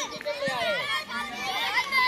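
A crowd of children's voices, many boys calling and chattering over one another at once, with no single voice standing out.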